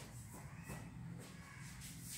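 Faint room sound: a low steady hum with a few soft shuffling sounds.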